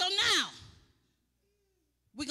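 A person's breathy, sigh-like vocal exclamation, one short 'ahh' falling steeply in pitch, lasting about half a second at the start.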